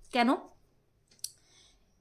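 A woman's voice says one short word, then a pause with a single short, sharp click a little over a second in.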